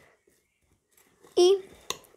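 Near silence for over a second, then a single short spoken word and one sharp click shortly after it.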